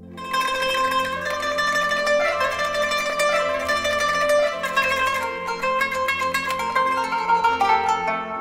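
Kanun (qanun), the plucked Arabic zither, playing a fast run of plucked notes in a Tunisian traditional melody. It comes in sharply just after the start over a low, steady backing drone.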